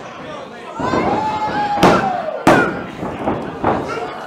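Two sharp smacks of wrestling impacts in the ring, about two-thirds of a second apart, over a shouting crowd with one long drawn-out yell just before them.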